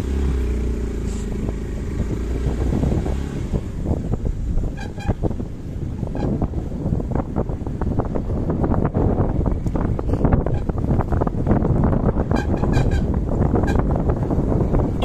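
Motorcycle engine running under way, with wind and road rumble on the handlebar-mounted microphone. Short horn toots sound about five seconds in and again a few times near the end.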